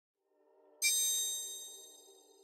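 A bright chime struck once, about a second in, ringing and fading away over the next second, over a soft low sustained tone: an intro sound effect.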